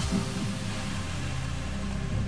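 Quiz countdown-timer music starts abruptly and runs on steadily: a low, even hum of held notes under a hiss.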